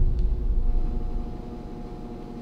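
A deep low rumble that fades away over about two seconds, with a faint steady hum underneath.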